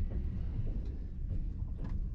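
Low, steady rumble of a TGV Euroduplex train running slowly out of the station, heard from inside the passenger coach, with a faint click near the end.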